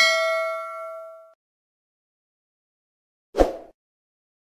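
Notification-bell 'ding' sound effect from a subscribe-button animation, a bright chime that rings out and fades over about a second. A short, soft pop follows about three seconds later.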